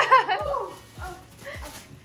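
A toddler's high-pitched excited squeal in the first half-second, then fainter vocal sounds, over background music with a steady low beat.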